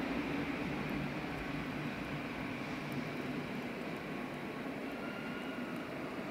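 Double-deck regional train pulling slowly into a platform under a large station hall: a steady rumble and hiss, with a faint high squeal coming in near the end as it brakes.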